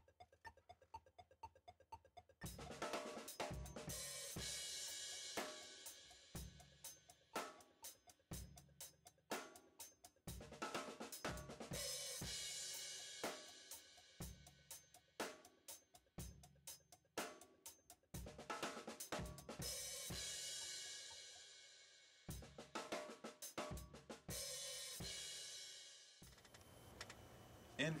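Drum kit played in an inverted-paradiddle groove across hi-hat, snare, bass drum and tom, with a crash cymbal hit roughly every eight seconds and left to ring. It opens with about two seconds of light, even ticks before the full groove comes in, and the playing dies away a couple of seconds before the end.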